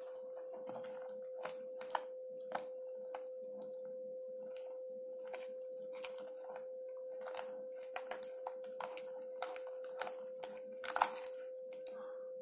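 A spoon stirring thick shaving-foam slime in a clear plastic tub: irregular soft clicks and taps, with a louder pair about eleven seconds in. A steady single-pitched hum runs underneath.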